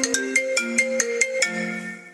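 A mobile phone ringtone playing a quick marimba-like melody of short, rapid notes, ending on a longer held note near the end.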